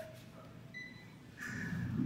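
Quiet room tone, with one faint, short electronic beep about a second in; a voice starts to come up near the end.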